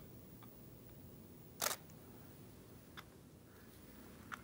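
A camera shutter fires once about one and a half seconds in, a short sharp mechanical snap, with a fainter click later over quiet room tone.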